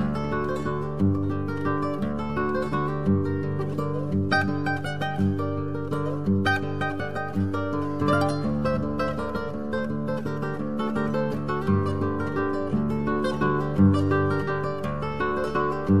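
Solo classical guitar playing a chacarera: a plucked melody and chords over repeating bass notes.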